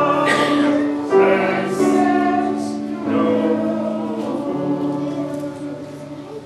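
Choir singing the closing of a hymn in long, slow held chords that change about once a second, fading away toward the end.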